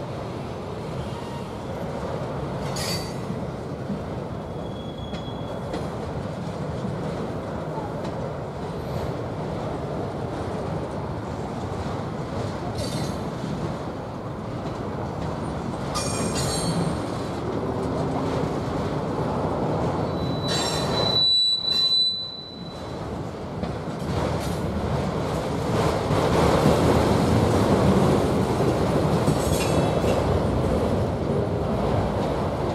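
Freight train of autorack cars rolling past: a steady rumble of steel wheels on rail, broken several times by brief high-pitched wheel squeals, the clearest a ringing squeal about two-thirds of the way through. The rumble grows louder over the last few seconds.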